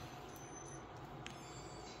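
Quiet room tone: a faint steady hum, with one faint click a little over a second in.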